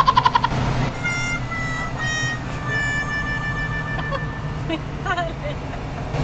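Car cabin road and engine noise, a steady low rumble. A quick run of pulses opens it, and between about one and four seconds in a series of held tones sounds, each a little lower than the last.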